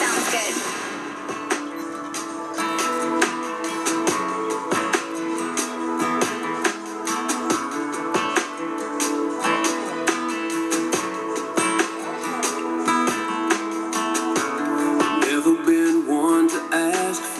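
Country music with guitar, playing on FM radio, with a steady beat.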